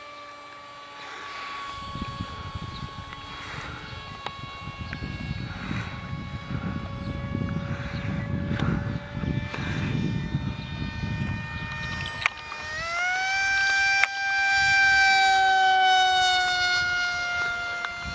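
Radio-controlled model powered glider's motor and propeller whining steadily in flight, with a low rumble underneath. About twelve and a half seconds in, the whine climbs sharply in pitch and grows louder as the motor is throttled up, then sinks slowly in pitch.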